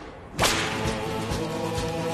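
A sudden whoosh-and-hit sound effect about half a second in, opening into theme music with held chords and a regular percussive beat.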